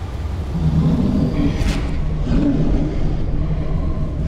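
Loud, low rumble in a rock band's intro track, with a brief rushing hiss about one and a half seconds in.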